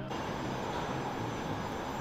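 Steady, even roar of outdoor noise on a city street, with a jet-like quality. It begins abruptly at a cut in the video.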